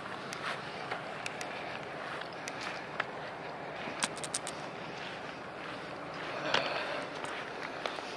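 Footsteps and rustling through grass and wood mulch while a basset hound is walked on a leash, with scattered light clicks and a quick run of them about four seconds in.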